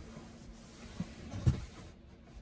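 Hands rubbing and pressing a fabric roof shade against the glass roof along its seam, a faint scratchy rustle, with a small tap about a second in and a firmer thump about half a second later.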